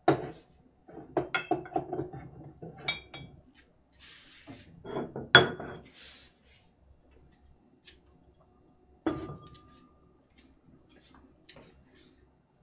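Bolesławiec stoneware pottery clinking and knocking as pieces are set down and moved on wooden shelves and a wooden table, with two short scrapes. The loudest knock comes a little past five seconds in; one near nine seconds rings briefly.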